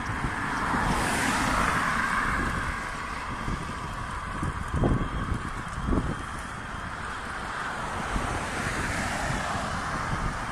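Wind rushing over the microphone while moving along a road, mixed with traffic noise that swells over the first few seconds. Two short knocks come about halfway through.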